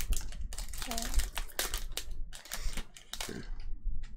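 Foil wrapper of a Pokémon card booster pack crinkling and crackling in quick, irregular bursts as it is torn open by hand.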